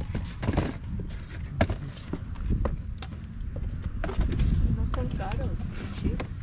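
Rustling and short knocks of things being handled in a cardboard box, over a low rumble of wind on the microphone, with a brief voice about five seconds in.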